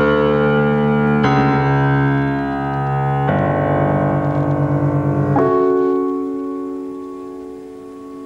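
Grand piano chords played slowly: a new chord about every two seconds, each held and ringing. The last chord rings on and fades out over the final couple of seconds.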